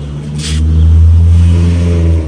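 A motor running with a steady low drone that swells louder about half a second in, with a brief hiss as it rises.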